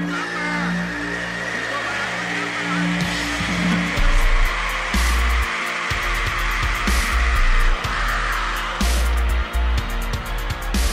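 Heavy rock song: a droning, distorted intro with pulsing low notes, then heavy bass and drums come in about four seconds in.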